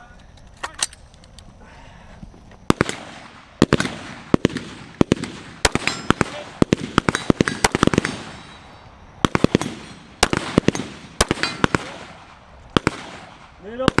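A competitor's long gun firing in a string of sharp gunshots: single shots and quick doubles and clusters, with a short echo after each.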